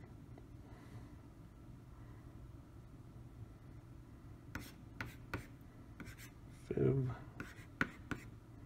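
Plastic stylus tapping and scratching on the pressure-sensitive screen of an LCD writing tablet as letters are written, heard as a string of sharp ticks in the second half after a quiet start. There is a brief low vocal sound about seven seconds in.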